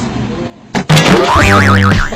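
A springy, wobbling 'boing' comedy sound effect that warbles up and down several times, over music with a steady low bass note. It comes in about a second in, after a brief drop in sound.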